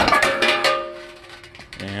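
A metal bar clanging and rattling as it comes off its mounting bolts: a sharp metallic strike and clatter, then ringing tones that die away over about a second and a half.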